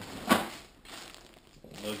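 Plastic packaging crinkling as an item is pulled from a tear-open mailer, with one louder rustle about a third of a second in, then softer handling noise.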